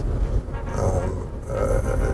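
Steady low road rumble inside a moving car, with a faint hesitant hum from a man's voice between phrases.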